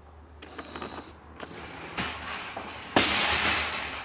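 Metal wire shopping cart being pushed over a tile floor: a few light clicks and knocks, then about a second of loud rattling near the end as the cart rolls into place.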